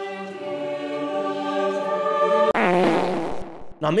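A single held choir-like note, steady and slowly swelling, cut off abruptly about two and a half seconds in. A short wobbling, buzzing comic sound effect follows it.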